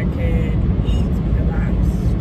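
Steady low road and engine rumble inside a moving car's cabin, under a woman's talking.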